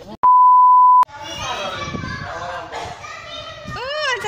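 A loud single-pitch bleep tone, about 1 kHz and lasting under a second, dropped in at an edit with all other sound cut out around it. Then several children talk and shout over one another.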